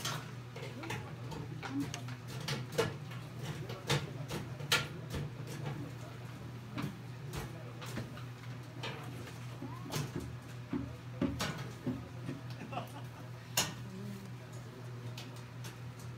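A quiet lull with low background chatter, scattered sharp clicks and knocks, and a steady low hum underneath.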